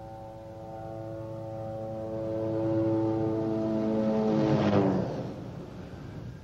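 A helicopter approaching: a steady engine hum that grows louder for about four seconds, then a rushing sound about five seconds in as it passes close, after which it drops away.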